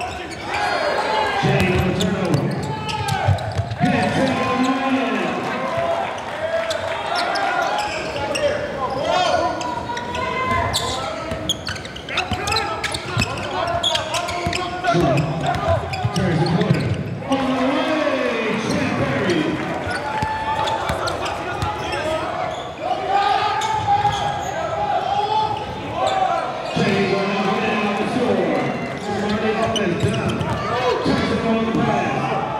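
Basketball dribbling and bouncing on a gym's hardwood floor during live play, mixed with continual shouting and chatter from players and spectators.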